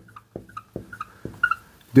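Marker writing on a whiteboard: a series of light taps and a few short, faint squeaks as the numbers are written.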